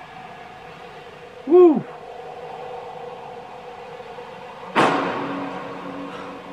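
Closing of a film trailer's soundtrack: a faint sustained musical drone, a single short vocal sound about a second and a half in, then a sudden loud impact hit near the end that dies away slowly over a low held tone.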